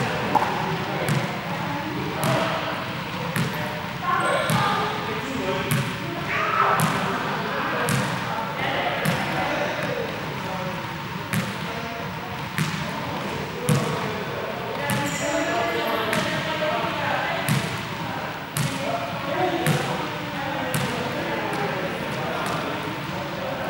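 Sharp thuds recurring about once a second, echoing in a large hall, over a layer of indistinct voices.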